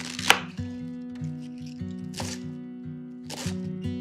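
Kitchen knife cutting through cabbage on a wooden cutting board: three separate cuts, the first and loudest just after the start, the others about two and three and a half seconds in, with background acoustic guitar music.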